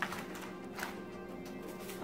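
Quiet background music with steady held tones, and a few light rustles of a foil bubble mailer being handled as a pouch is pulled out of it.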